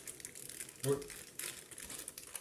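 Saucepan of water at a hard boil under a glass bowl set on top as a bain-marie, bubbling with an irregular crackle.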